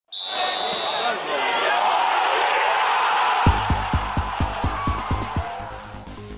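Electronic intro music: a dense noisy swell with a high steady tone at first, then a driving beat of kick-drum thumps, about four a second, with hi-hat ticks above, comes in about halfway through.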